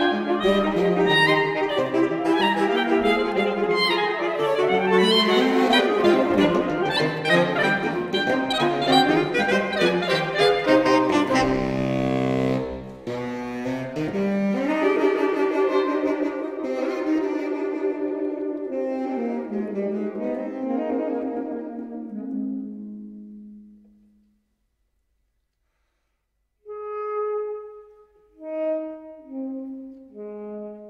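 Saxophone quartet of soprano, alto, tenor and baritone saxophones playing live. The playing is full and busy for about twelve seconds, breaks off briefly, then continues in held lines that fade out about twenty-four seconds in. After a short silence, a few separate, spaced notes come near the end.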